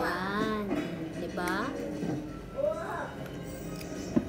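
High-pitched voices with music playing, no clear words.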